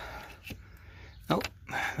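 Mostly speech: a man's short 'oh' in the second half, with one faint click about half a second in as a metal line and its bracket are handled in the engine bay.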